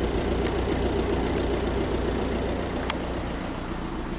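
Four-cylinder 2.0 TDI diesel engine of an Audi A4 idling, a steady low hum heard from inside the cabin. A single faint click comes about three seconds in.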